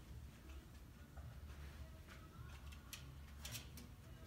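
Near silence: room tone with a low hum and a few faint clicks in the second half.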